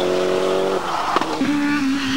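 Rally car engine held at steady revs as the car drives away up the road; about a second in the note breaks off into a lower, steady single tone with a click.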